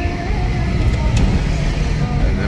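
Steady low rumble of engine and road noise, heard from inside the cabin of a moving ambulance.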